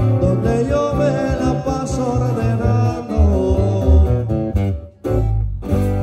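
Live grupo sierreño band playing a corrido instrumental passage: an acoustic guitar picking quick melodic runs over a bass guitar line. About five seconds in, the music cuts off abruptly and a held chord over a low bass note starts.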